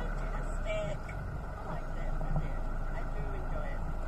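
Steady low rumble with faint, brief voices in the background.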